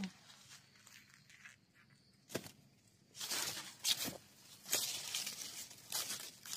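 Dry cornstalk leaves and husks rustling and crackling as a hand reaches in among the stalks. A single sharp crack comes a little after two seconds, and the rustling grows busier through the second half.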